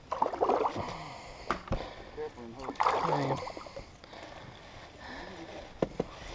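Water sloshing and splashing beside a bass boat as a hooked spotted bass is played alongside, with a few sharp clicks. Short unclear bursts of a man's voice are louder than the water, about half a second in and again about three seconds in.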